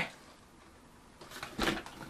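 A quiet stretch, then a few short rustles and a tap from the small cardboard box and its paper insert being handled and opened, the loudest about one and a half seconds in.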